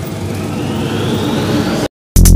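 Road traffic outside: a vehicle's engine running with a rising pitch as it accelerates, over a steady traffic rumble. The sound cuts off suddenly near the end.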